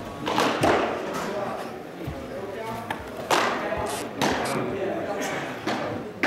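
Baseballs smacking into leather gloves, about five sharp pops at irregular intervals that echo in a large gym, over a murmur of voices.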